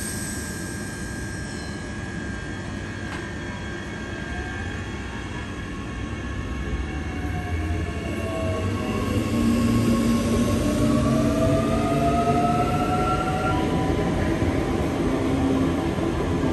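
Queensland Rail suburban electric multiple-unit train moving along the platform, its motors whining in tones that glide up and down over a low rumble of wheels. It grows louder about halfway through as the cars move close past.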